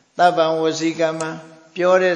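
An elderly monk's voice reciting in a level, chant-like pitch through a microphone, with a brief pause a little after a second in.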